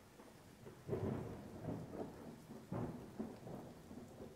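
Thunder rumbling over steady rain: two rolls of thunder, about a second in and just before three seconds, each dying away over about a second.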